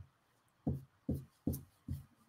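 Glue stick rubbed back and forth over fabric laid on a rubber stamp, laying glue onto the stamp's raised areas for a resist: short, dull strokes at about two or three a second, starting about half a second in.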